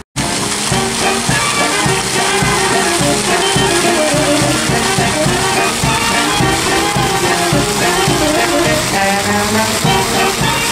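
Brass band playing a tune over a steady drum beat, with trumpets, trombones and saxophones. The music cuts in abruptly at the start.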